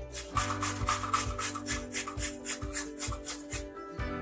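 Carrots being grated on a stainless-steel box grater: a run of quick, even rasping strokes.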